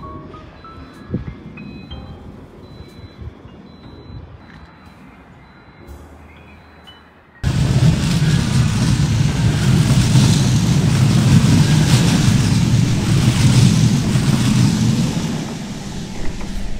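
Quiet music with a few rising mallet-like notes, then, about seven seconds in, a sudden cut to the loud, low noise of a Bombardier M5000 Metrolink tram moving off past the platform close by.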